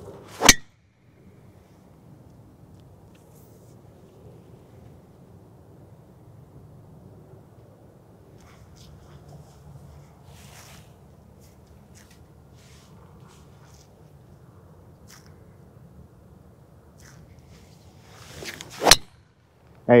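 Two golf drives off the tee, each a sharp crack of a driver head striking the ball: one about half a second in, the other near the end, which is the loudest and is preceded by a brief swish of the swing. Between them there is faint outdoor background with a few soft clicks.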